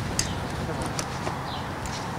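Low steady rumble with faint background voices and a few sharp, faint clicks.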